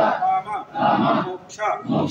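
A group of devotees chanting together in unison, loud short repeated phrases.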